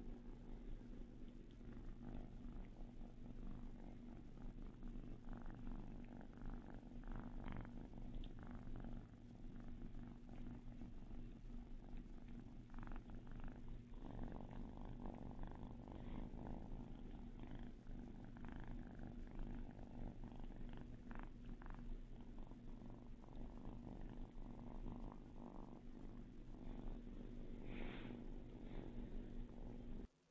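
A kitten purring steadily as it is petted, with frequent short rustles and scratches from kittens wrestling on a fluffy blanket.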